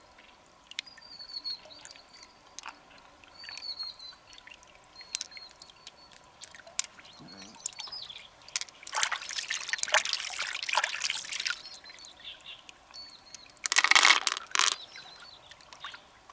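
Water dribbling and wet, squelching handling as hands work through the flesh of an opened freshwater mussel. There are two louder spells, one from about nine to eleven seconds in and a shorter one around fourteen seconds.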